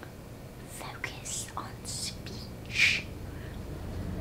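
A woman whispering a few short breathy words, without voice, the last one the loudest.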